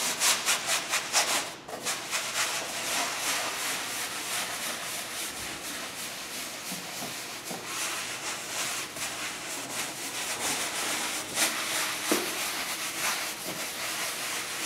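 Cheesecloth and a sponge rubbed and dabbed over a wall to blend wet glaze. A quick run of scrubbing strokes comes first, then steady rubbing with a couple of harder strokes near the end.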